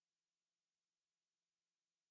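Near silence: the audio track is effectively muted, with no sound from the scene.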